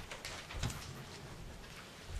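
Quiet room noise with a few faint, soft knocks and rustles, about a quarter second and three-quarters of a second in, as a person moves away from a podium.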